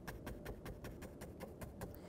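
Scruffy paint brush pouncing on canvas: a faint, quick, uneven run of soft taps.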